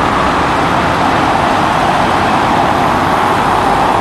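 Steady street traffic noise, a continuous haze of car engines and tyres with no single vehicle standing out.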